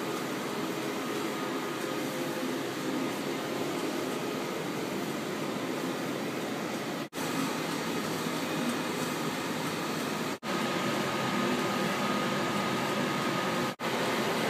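Steady mechanical running noise of cinema projection-booth machinery, the 35mm film platter system turning as the print winds on. It is broken by three brief dropouts, at about seven, ten and a half and fourteen seconds in.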